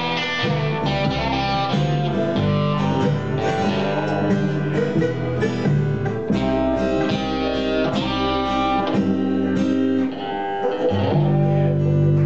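Acoustic country band playing the instrumental close of a song on electric and acoustic guitars and mandolin over a bass line, with busy plucked picking that settles into a held final chord about eleven seconds in.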